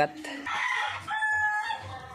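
A rooster crowing: one long crow lasting over a second, ending on a held note.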